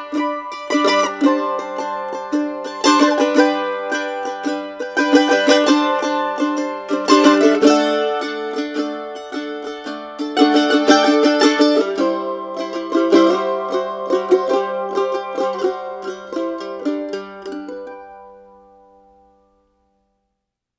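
Background music: the instrumental ending of a song, with quick strummed and plucked string notes over a held low note, fading out to silence near the end.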